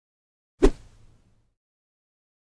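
A single sharp impact sound effect from a logo intro animation: one hit about half a second in that dies away within about a second.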